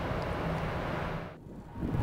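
Wind buffeting an outdoor microphone as a low rumble under a steady even hiss. The noise dips briefly about three-quarters of the way through, then comes back.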